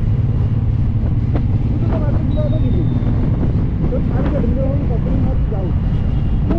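Steady low riding rumble of a Suzuki Intruder cruiser motorcycle under way, its engine and wind noise mixed together on the camera, with a voice talking over it.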